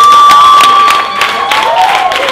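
A small audience clapping and cheering, with one voice holding a long, high cheer that breaks off about a second in, followed by shorter whoops.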